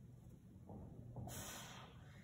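A man's faint breathing, with a hissing breath out starting a little past halfway, from the strain of holding a one-arm plank row against a resistance band.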